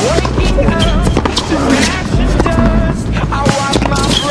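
Tennis rally on a hard court: sharp racket strikes on the ball and shoe squeaks, over background music with a heavy low bass.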